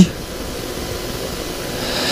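A steady hiss of background noise with no rhythm or clear pitch, growing slightly louder near the end.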